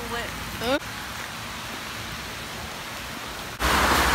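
Heavy rain falling, a steady even hiss, after a short rising voice at the start. Near the end it cuts abruptly to a louder steady hiss with a low hum.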